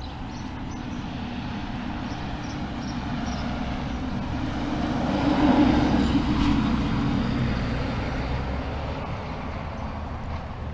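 A vehicle running on a paved road: engine and tyre noise that swells to a peak about halfway through, then eases off.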